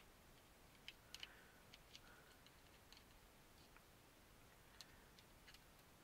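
Near silence, with a few faint, scattered small clicks of a grease applicator tip against the plastic differential case and its small bevel gears as grease is worked in.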